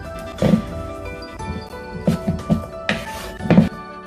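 Background music, with a few soft knocks from a fork mashing and stirring softened butter in a mixing bowl.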